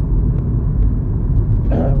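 Steady low rumble, even in level, with no distinct events in it.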